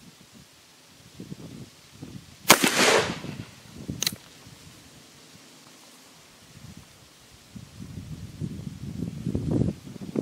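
A single black-powder shot from a Rogers & Spencer percussion revolver, the Pedersoli replica, fired at a target: one sharp, loud crack with a short ringing tail. A second, weaker crack follows about a second and a half later.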